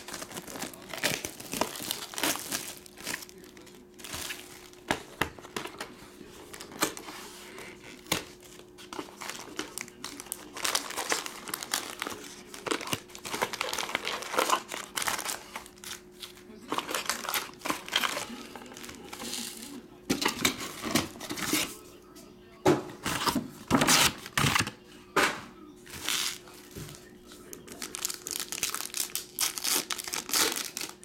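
Cellophane shrink-wrap being torn off a trading-card hobby box and crumpled, then the crinkle and rustle of foil card packs being handled, in irregular bursts. A foil pack is torn open near the end.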